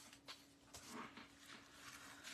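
Near silence: faint rustling and a few light taps of cardstock being moved on a cutting mat, over a faint steady hum.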